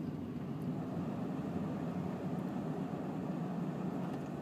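Steady low rumble of a running 2000 Honda Accord, heard from inside its cabin.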